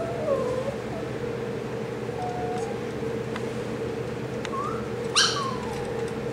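Small dog whining: a string of short, high whimpers that bend up and down in pitch, the loudest about five seconds in.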